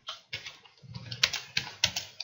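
Computer keyboard typing: a run of quick, irregularly spaced keystrokes.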